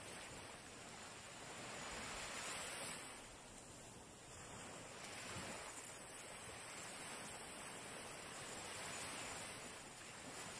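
Faint, soft rush of small waves washing onto a sandy shore, swelling and easing slowly.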